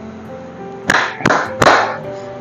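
Three hand claps a little under half a second apart, the wordless 'thank, thank, thank' beat of a thank-you clap routine, over steady background music.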